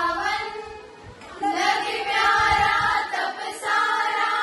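A group of women singing a Jain devotional hymn in unison, with a short break for breath about a second in before the voices come back together.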